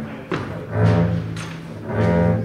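Double bass bowed by a beginner: a low note drawn across a string in the middle, with a few knocks around it.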